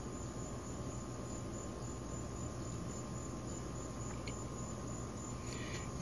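Steady outdoor background with a faint, unbroken insect drone over a constant low hiss.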